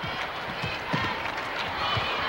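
Basketball game sound in an arena: a steady crowd murmur with scattered voices, and a few short thuds of players' feet and the ball on the hardwood court.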